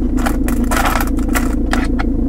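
Loose coins and tokens clinking and scraping as a hand sifts through a car's centre-console cubby, a quick string of small clicks. Under them, heard from inside the cabin, is the steady idle of the Mercedes C250 CDI's 2.1-litre diesel.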